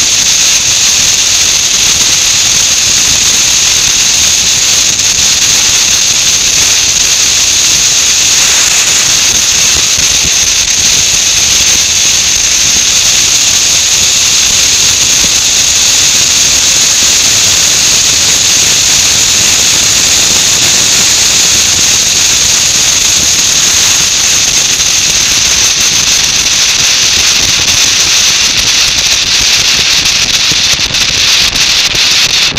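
Steady, loud rushing hiss of wind and road noise at a motorcycle-mounted camera while riding at speed; no engine note stands out.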